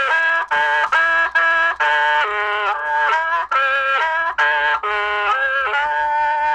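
Hmong qeej, the bamboo free-reed mouth organ, playing a tune of short held chords that change about every half second, several reed pipes sounding together in a voice-like tone.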